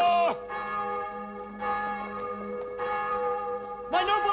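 Church bell ringing, struck about once every second and a bit, its tones ringing on between strokes.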